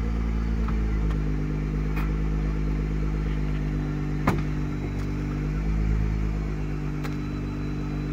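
Nissan GT-R R35's twin-turbo V6 idling steadily. About four seconds in, a sharp click as the driver's door is opened, with a couple of lighter clicks around it.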